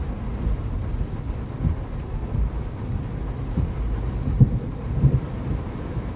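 Heavy rain on a car's roof and windscreen heard from inside the cabin as a steady low rumble, with a few brief low thumps in the second half.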